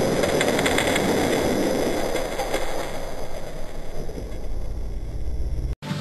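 Die-cast Hot Wheels cars rolling down a plastic six-lane track in a race, a dense rattling rumble that slowly fades over several seconds.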